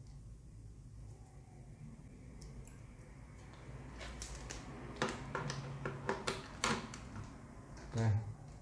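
Handling noise from a power cable and its plastic plug: faint rustling, then a cluster of sharp clicks and knocks between about four and seven seconds in, over a faint low hum.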